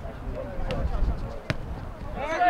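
Distant players' voices calling out during a match, with one sharp kick of a ball about one and a half seconds in and a lighter knock before it.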